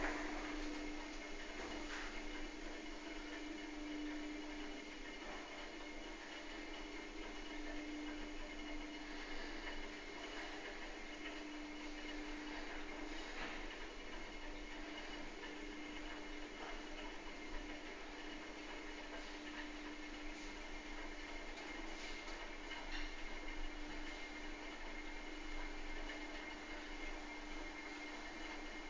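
Thyssen-De Reus glass passenger elevator car travelling down its shaft: a steady low hum with a faint higher whine and a few faint clicks along the way.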